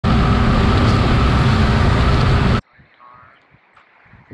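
BMW F800GS parallel-twin motorcycle riding at highway speed, engine and wind noise loud and steady on the camera microphone. It cuts off abruptly about two and a half seconds in, leaving only faint sounds.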